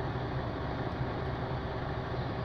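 Mercedes-Benz Actros truck's diesel engine idling steadily, heard from inside the cab.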